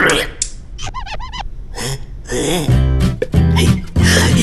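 A cartoon character's startled gasp and wordless vocal sounds, including a short wavering call about a second in, followed from about halfway through by background music with a strong bass line.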